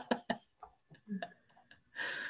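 Several people laughing over a video call in quick bursts, loud for about the first half second and then dying down to a few fainter laughs and soft ticks.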